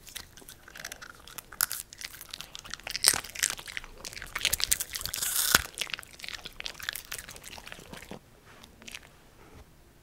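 An Italian greyhound crunching and chewing a piece of popcorn: a quick run of crisp crunches, loudest in the middle, that stops about eight seconds in.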